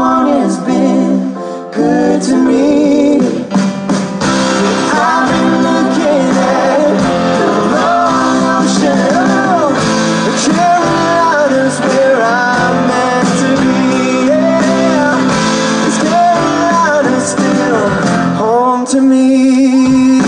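Live band playing a song with sung vocals over acoustic and electric guitars, drums and organ.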